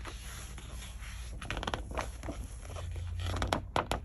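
Paper rustling and crackling as a page of a large paperback book is turned by hand, in two clusters of short crisp crackles, about halfway through and again near the end.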